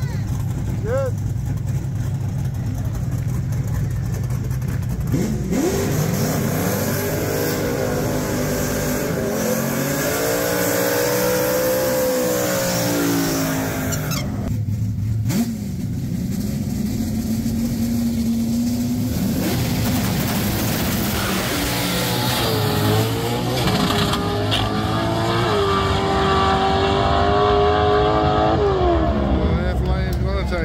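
Drag car engine idling, then revved up and down repeatedly behind the starting line. After a steadier stretch, it launches down the strip about two-thirds of the way in, revs climbing in steps through the gears, loudest near the end, then falling away as the car pulls off down the track.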